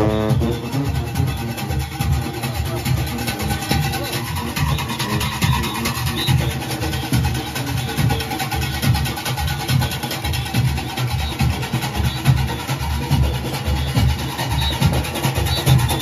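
Junkanoo band music: goatskin drums and cowbells playing a fast, dense, unbroken rhythm. A held brass horn chord dies away at the very start.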